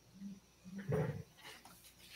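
A person clearing their throat: two short low hums, then a louder rasp about a second in.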